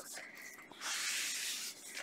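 A hand sliding over the paper page of a coloring book: a soft paper swish lasting about a second.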